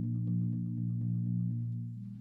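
Marimba played with four soft mallets, holding a low chord as a steady roll of quick repeated strokes that fades a little near the end.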